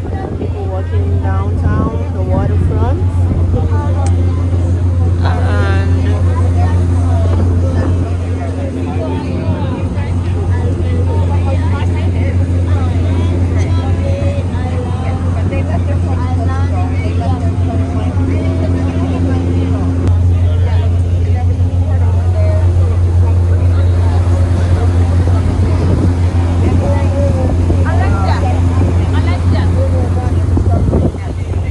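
Tour boat's engine running with a steady low drone as the boat moves across the harbour, with people talking over it.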